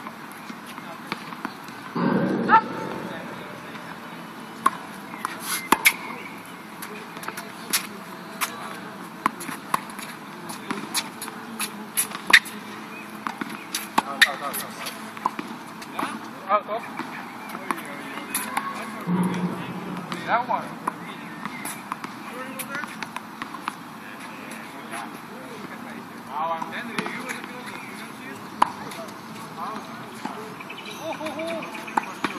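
Sharp knocks of tennis balls being struck and bounced on a hard court, coming irregularly every second or two, with indistinct voices.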